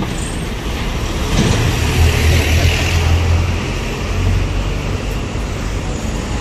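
Street traffic, with a bus engine running close by; its low rumble swells about a second and a half in and eases after a few seconds.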